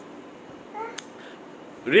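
Quiet room with a brief high-pitched voice sound about a second in and a single light click, then someone starts talking right at the end.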